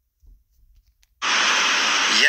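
Near silence, then a little over a second in a loud, steady rushing noise cuts in suddenly: the background noise of a video that has just started playing, most like outdoor wind or traffic noise.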